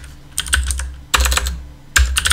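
Typing on a computer keyboard: short runs of quick keystrokes, one about half a second in, another just after a second, and a third starting right at the end.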